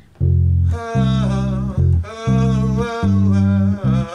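Electric bass guitar playing a chord progression in G as a run of repeated low notes that change every half second or so, with short breaks between phrases. From about a second in, a higher wavering melody line plays above the bass.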